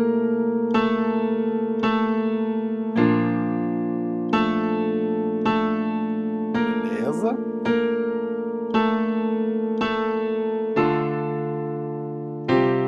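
Keyboard with a piano sound playing in F major: open-fifth chords held in the left hand (C–G, then B♭–F) with right-hand notes struck about once a second over them. The bass chord changes about three seconds in and again near the end.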